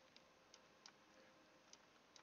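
Near silence, broken by four or five faint clicks at uneven spacing from a computer mouse.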